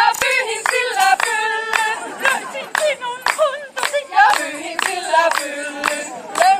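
Several women singing together unaccompanied, clapping their hands in a steady beat of about two claps a second.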